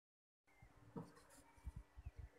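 Near silence: faint room tone with a steady low hum, and a few soft low thumps about a second in and again near the end.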